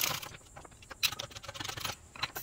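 Shop press work on a rocker arm: a short scrape right at the start, then from about a second in a rapid patter of small metallic clicks and rattles as the needle-bearing trunnion is pressed out.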